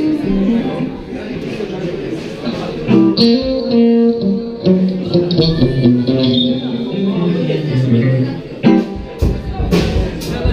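Live band: an electric guitar plays single sustained blues notes over the amplifier, with drum hits toward the end. People's voices are heard under it.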